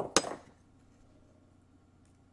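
A small metal hand tool set down on a hard workbench: a quick knock, then a louder metallic clatter with a short ring, all within the first half second.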